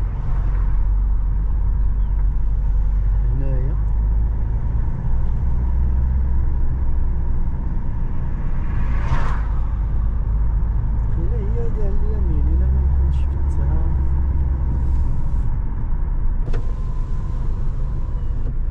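Steady engine and tyre rumble of a car being driven along a paved road, heard from inside the cabin, with a brief whoosh of another vehicle going past about nine seconds in.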